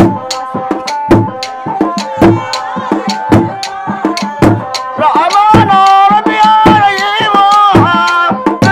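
Somali Bantu sharara dance music: wooden hand drums struck in a steady beat under a held melody. From about five seconds in, a loud, high voice joins, singing over the drums with a wavering pitch.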